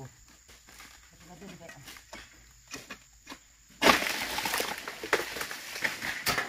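A cut oil palm frond crashing down through the palm foliage: a sudden loud rustling crash about four seconds in that runs on for around two seconds, with a second sharp hit shortly after.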